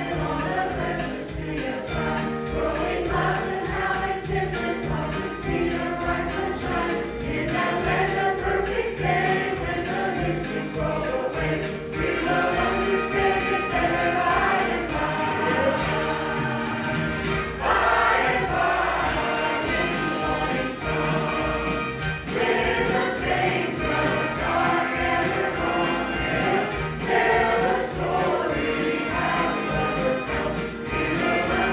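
Mixed church choir of men and women singing a hymn together.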